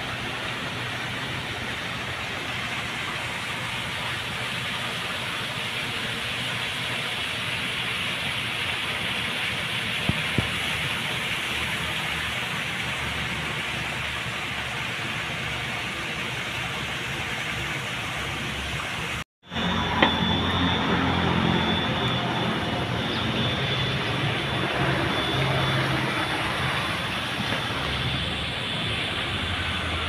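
A steady rushing outdoor noise with no distinct events; it breaks off briefly about 19 seconds in and comes back slightly louder.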